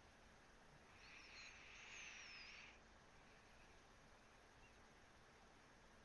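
Near silence: faint hiss of an open microphone. Between about one and three seconds in there is a brief, faint, high-pitched sound with thin gliding squeaks.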